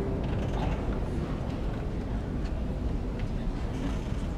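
Shuffling and creaking as a choir sits down on its seats after a song, with scattered faint clicks and knocks over a low rumble.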